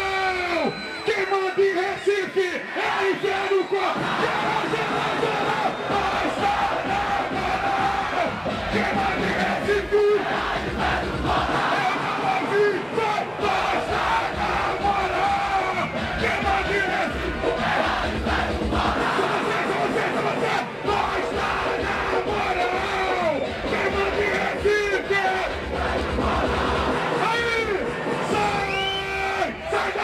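A large crowd of football supporters shouting and chanting together, loud and sustained, with the bass of a funk beat coming and going underneath.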